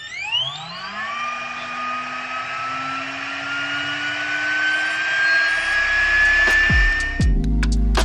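GHD Duet hot-air hair straightener switched on, its fan motor whining as it spins up over the first second, then blowing with a steady hiss while the whine creeps slowly higher. It cuts off shortly before the end, when music takes over.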